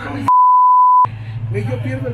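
A single steady high-pitched censor bleep, under a second long, dubbed over a spoken word so that all other sound drops out while it plays; people talk before and after it.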